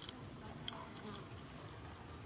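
Insects singing in the forest: a steady, high-pitched drone that holds two constant tones, with a few faint clicks over it.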